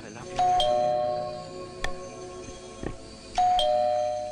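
Two-tone ding-dong doorbell chime rung twice, about three seconds apart. Each ring is a higher note followed by a lower note that rings on.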